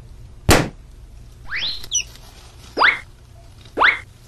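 Cartoon sound effects: a single sharp balloon pop about half a second in, followed by three short rising whistle-like sweeps.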